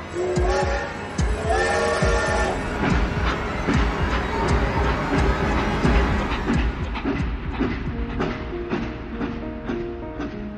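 Film-score music mixed with train sound design. A wavering horn-like tone sounds over the first couple of seconds above a fast run of low knocks, and held notes come in near the end.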